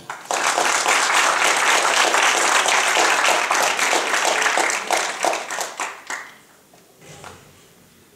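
Audience applauding; the applause dies away about six seconds in.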